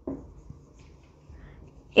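Marker pen writing on a whiteboard: quiet, irregular scratching strokes of the felt tip across the board.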